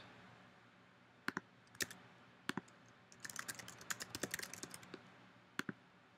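Computer keyboard typing, faint: a few separate clicks, then a quick run of keystrokes about three seconds in, and one last click near the end.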